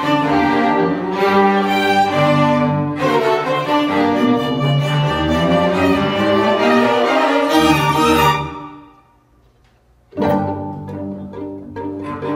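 String chamber orchestra of violins, cellos and double bass playing an ensemble passage. About eight seconds in, the phrase ends and dies away into a brief silence, then the strings come back in together with a sudden strong entry about two seconds later.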